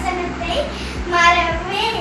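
A young girl singing solo, holding one long note through the second half.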